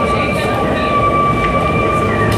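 Metal band playing live, heavily distorted and overloaded: a dense wall of distorted guitar and drum noise with a steady high ringing tone held through it.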